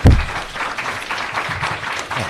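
Audience applauding, a dense patter of many hands clapping. A loud low thump at the very start.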